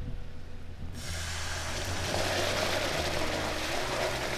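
Hot caramelizing sugar syrup sizzling and bubbling in a pan. The hiss gets suddenly louder and brighter about a second in as something is poured in from a bowl, and keeps going while a metal spoon stirs.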